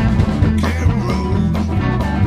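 Live blues-rock band playing: electric guitars over bass and a drum kit keeping a steady beat.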